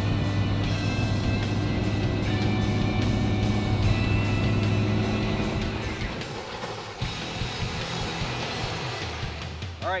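Background music laid over a bass boat's outboard motor running at speed across the water. The low engine drone drops away about six seconds in.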